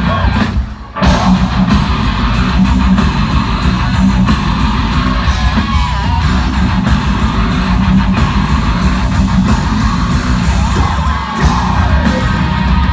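Live heavy metal band playing loudly: distorted electric guitars over drums. The music briefly stops about half a second in, then crashes back in and drives on.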